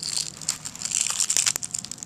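Hands twisting the plastic head of a Tektite Mark III light to unscrew it inside its fabric pouch: a crinkly rustle of handled fabric with many small, quick clicks.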